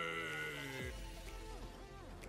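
Livestream donation alert clip playing: a man's long, drawn-out shouting voice with music.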